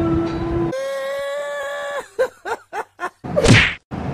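Comic sound effects added in editing: a steady held tone that jumps higher partway through and cuts off, then a quick run of about six short falling blips, ending in a loud whoosh.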